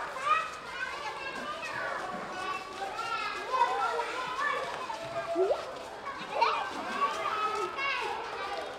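Many schoolchildren chattering and calling out at once, their voices overlapping, with a couple of sharp rising calls a little past the middle.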